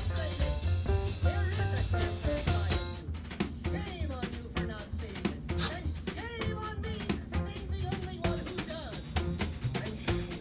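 Jazzy cartoon soundtrack music with a drum kit keeping a steady beat, with gliding voice-like tones over the middle few seconds.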